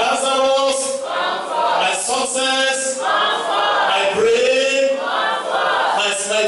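Voices singing a worship chorus, with long held notes that glide in pitch.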